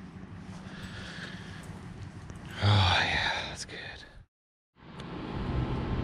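A man breathing in the fresh outdoor air, a long airy breath, then letting it out with a short voiced sigh about halfway through. After a brief dead-silent gap comes a faint steady indoor hum.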